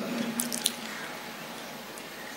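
A pause in a man's speech over a microphone. The voice's echo dies away in the hall, a few faint clicks come about half a second in, and then a low steady room hiss with a faint hum remains.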